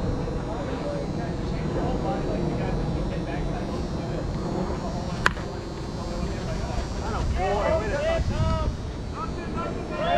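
A softball bat hitting a pitched ball: one sharp crack about five seconds in, followed a couple of seconds later by players shouting.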